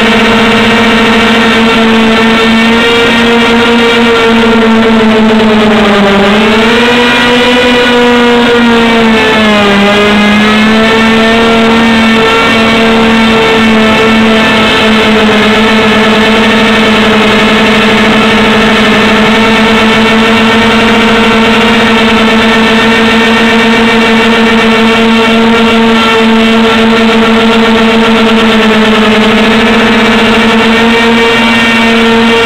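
Multicopter's electric motors and propellers whining steadily and loudly, picked up by the onboard camera. The pitch dips and recovers twice, about six and ten seconds in.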